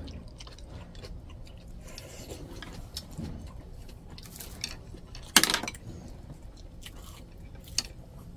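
Close-up eating sounds: udon noodles drawn into the mouth and chewed, with light clicks of chopsticks against bowls. One short, much louder noise comes about five and a half seconds in.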